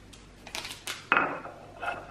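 Food bowl clinking and knocking against a stone countertop as a cat eats from it: a few light clicks, then a louder ringing clink about a second in.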